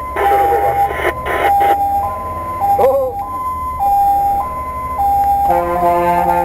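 Fire truck's two-tone siren, heard from inside the cab, alternating between a high and a low note about every 0.6 seconds over the low drone of the engine. Near the end a chord of several steady tones sounding together joins in.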